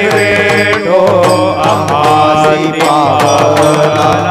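Live Varkari kirtan music: voices chanting a repeated devotional refrain together over a steady drum beat and sustained instrumental accompaniment.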